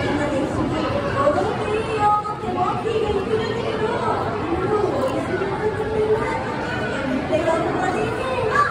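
Chatter of many voices talking at once, children among them, echoing in a large hall.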